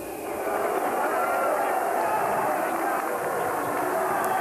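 Arena crowd reacting to a fighter's introduction, many voices shouting and cheering at once, swelling about half a second in and staying steady.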